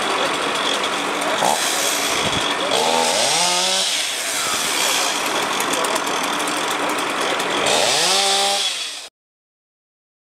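Steady rushing noise with an engine twice revving up and dropping back, the second time near the end; it all cuts off suddenly about nine seconds in.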